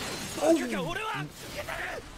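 An anime character shouting a line in Japanese, the voice gliding sharply in pitch, over a noisy shattering, crashing sound effect from the fight.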